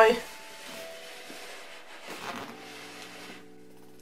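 Quiet room tone after a word trails off, with a faint steady hum coming in during the second half.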